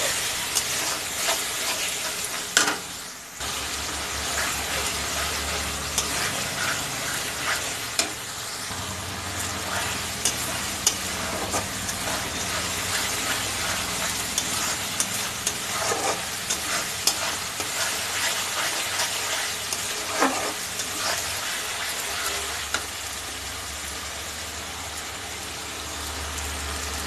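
Masala paste sizzling in oil in a kadai while a metal spatula stirs and scrapes it, with a few sharp clicks of the spatula against the pan.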